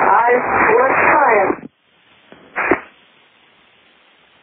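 A voice over an aviation radio frequency, narrow-band and unintelligible, for about a second and a half. After a short gap comes a brief burst, then a steady faint hiss of radio static.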